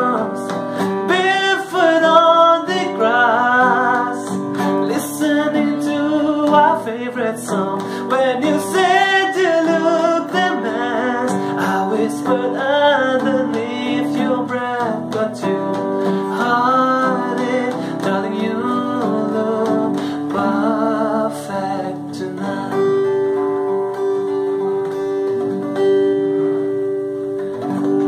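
A man singing a slow ballad, accompanied by his own acoustic guitar. The last several seconds end on one long held note.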